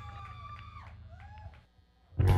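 Scattered audience whoops and howls, a few rising-and-falling calls, over a steady low amplifier hum; the sound dies away to a near hush near the end.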